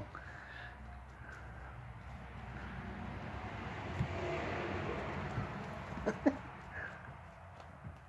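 A cat scuffling on a rug as it grapples with a tennis ball: a soft rustling that swells in the middle, with a few light knocks.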